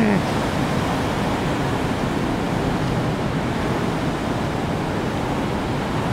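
Heavy surf from a typhoon swell breaking and washing over a rocky shore: a steady, unbroken rush of waves.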